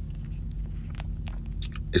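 Low steady background hum with a few faint, scattered clicks.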